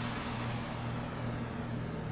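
Steady background noise with a faint low hum.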